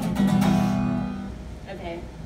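Acoustic guitar strummed once, the chord ringing out and fading away over about a second.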